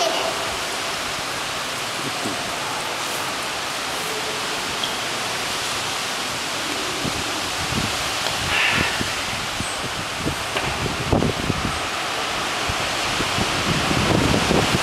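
Steady rushing noise, even and unbroken, with faint voices in the background.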